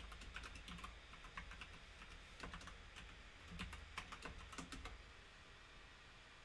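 Faint computer keyboard typing: irregular runs of key taps as a password is entered, stopping about five seconds in.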